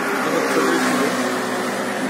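Steady road traffic noise, with the hum of a motor vehicle's engine close by for the first second or so.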